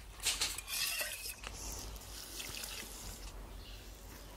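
Hot water being poured into a metal bowl, with a few clinks of a spoon against the bowl in the first second or so.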